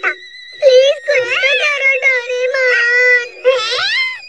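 A high-pitched cartoon voice wailing in drawn-out, wavering whiny cries, starting about half a second in. There is a short break near the end before another rising cry.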